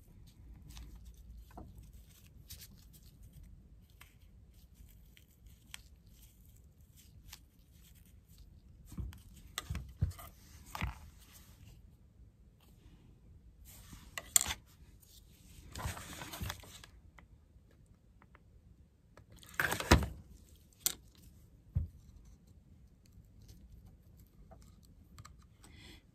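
Faint rustling and scratchy pulls of burlap ribbon being stripped by hand into strands of jute twine, with a few louder scraping, tearing bursts scattered through, the strongest around ten, fifteen to sixteen and twenty seconds in.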